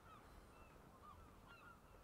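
Near silence with faint, distant bird calls: short, repeated calls scattered throughout.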